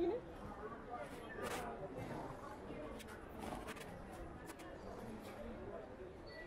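Indistinct voices of people talking around the camera, with a louder voice right at the start and a few sharp clicks or knocks.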